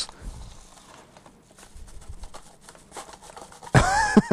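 A padded paper mailer being torn open and its wrapping handled: a run of faint paper rustles and small tearing crackles.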